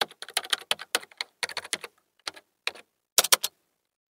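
Computer keyboard typing sound effect: a run of quick key clicks in uneven bursts with short pauses, stopping about three and a half seconds in.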